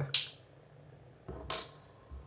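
Two short clinks about a second and a half apart, the second with a brief high ring: a metal crown cap set down on the worktop and a stemmed beer glass being picked up.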